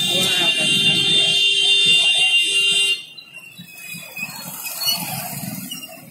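A vehicle horn held as one long, loud, steady high-pitched electronic tone, cutting off suddenly about three seconds in. After it comes the noise of a busy street with voices.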